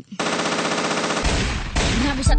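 Machine-gun fire sound effect: one rapid burst of shots lasting about a second and a half, with a low rumble coming in partway through.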